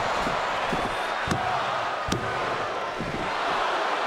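Steady noise of a large arena crowd, with two sharp thuds a little under a second apart near the middle.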